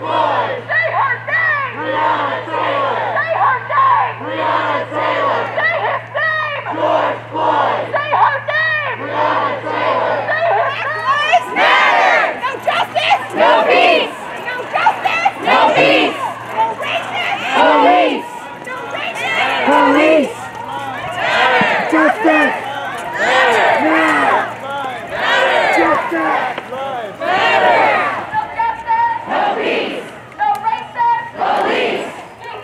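Crowd of protest marchers chanting and shouting together in repeated rhythmic phrases. A low steady hum under the first part stops about eleven seconds in, where the sound changes, as at an edit.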